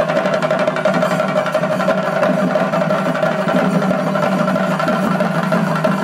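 Chenda drum ensemble playing a fast, continuous rhythm, with a steady ringing tone over the drumming.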